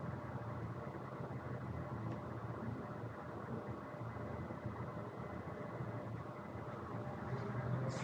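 Faint, steady room noise with a low hum and no distinct sounds.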